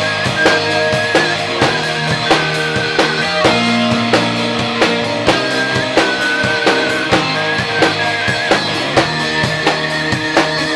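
Pan flute playing a wavering melody over a band with a steady drum beat, live.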